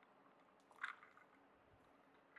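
Near silence: room tone, with one faint brief click a little under a second in.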